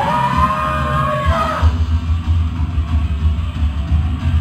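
Rock band playing loudly live in a room, drums driving throughout. A vocalist holds one long yelled note, rising slightly, for about the first second and a half.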